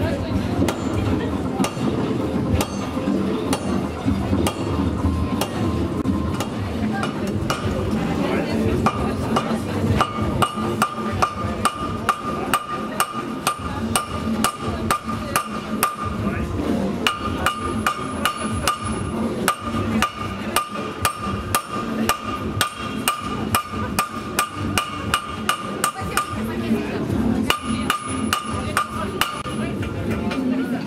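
Blacksmith's hammer striking steel on an anvil in a quick, steady rhythm of about two to three blows a second. From about a third of the way in each blow leaves a clear metallic ring, with two short breaks in the rhythm. A crowd murmurs underneath.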